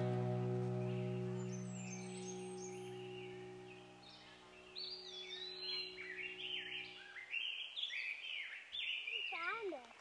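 Background music holding a sustained chord that fades out over the first several seconds, while small birds chirp repeatedly in the forest, a quick run of short rising-and-falling chirps that become clearer once the music is gone.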